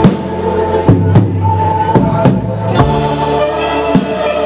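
Live band playing: electric guitars and bass guitar holding sustained notes over a drum kit keeping a steady beat.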